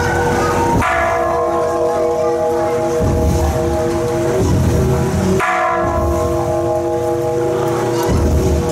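A large struck metal percussion instrument, rung twice about four and a half seconds apart, each stroke ringing on and fading slowly, over a low rumble.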